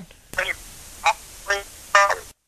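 Short, broken fragments of a man's voice over a telephone line: a few brief syllables, about four in two seconds, with line hiss between them.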